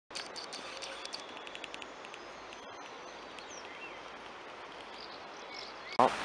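Faint outdoor ambience of small birds chirping over a steady background hiss: a quick run of short high chirps in the first couple of seconds, then single chirps now and then.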